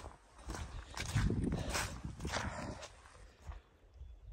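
Footsteps through wet, churned-up mud: a run of steps about half a second apart, fading near the end.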